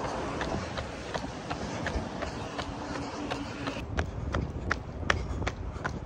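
Running footsteps of a jogger at an easy cool-down pace, about three footfalls a second, over a steady low outdoor noise.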